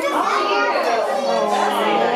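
Several voices, children's among them, talking and exclaiming over one another.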